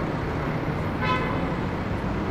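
City street traffic: steady engine rumble and road noise from passing cars and a black cab. About a second in, a brief horn toot sounds.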